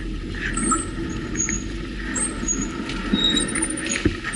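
City street traffic with a steady low rumble of road noise, broken by several brief high-pitched squeals.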